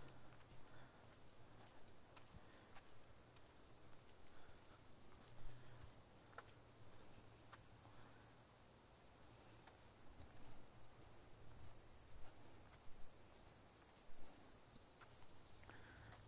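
A steady, shrill chorus of insects, a dense high-pitched buzz with a fine rapid pulse that never lets up.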